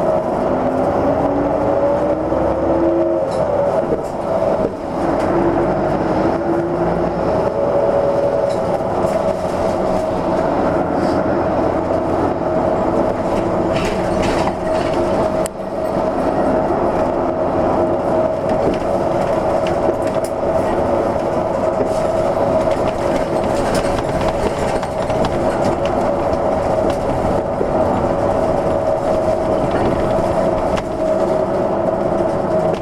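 Hino Blue Ribbon II city bus under way, heard from inside: the engine and drivetrain run with a steady whine over road noise. The engine note rises as the bus pulls away, then rises again a few seconds later, with brief dips in level about four and fifteen seconds in.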